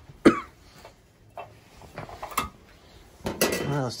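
Metal clinks of a screwdriver taking the sheet-metal cover off a steam boiler's pressuretrole pressure control. One sharp clink about a quarter second in is the loudest, followed by a few softer clicks.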